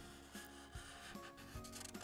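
A felt-tip marker rubbing faintly across paper as a line is drawn.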